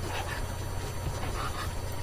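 Room tone: a steady background hiss with a low hum, with no distinct sounds.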